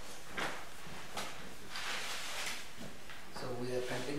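Paper rustling and short dry clicks as the pages of a small paperback are leafed through by hand, with a denser stretch of rustle about two seconds in.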